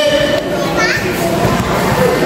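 Young spectators chattering and calling out over one another, with a couple of high, rising shouts about a second in.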